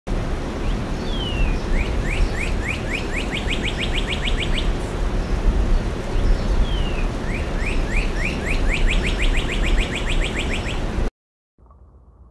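Red-crested cardinal singing a phrase twice: a short falling note, then a quickening run of rising chirps. A steady low rumble of background noise lies under it, and the sound cuts off suddenly near the end.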